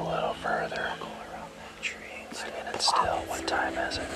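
Hushed whispered speech, breathy and without voiced tone.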